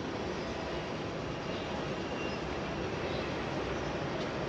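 Steady background noise with no distinct events.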